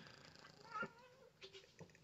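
Near silence, with a soft, brief cat vocalization a little under a second in and a couple of faint clicks later.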